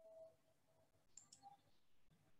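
Near silence, with two faint computer mouse clicks a little past a second in.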